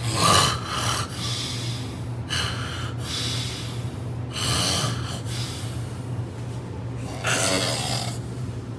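A man asleep on his side, snoring: noisy breaths that come two to three seconds apart over a steady low hum.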